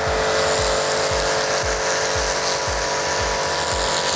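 Bosch Advanced Aquatak 140 pressure washer running steadily: the hum of its 2100 W induction motor and pump under the hiss of a high-pressure water jet from the rotary nozzle striking paving stones. A low pulse repeats about three to four times a second beneath the steady hum.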